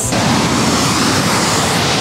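Waterfall on the Big Sioux River: a steady, loud rush of water pouring over rock.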